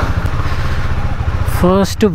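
Motorcycle engine running at low revs as the bike rolls slowly, a steady rapid low pulsing of firing strokes. A man's voice starts near the end.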